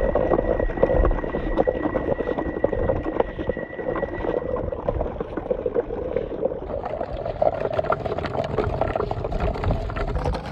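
Shallow water splashing and sloshing as a plastic toy tractor and its mud-loaded trolley are pulled through it.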